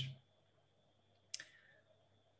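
Near silence broken by a single short, sharp click about a second and a half in.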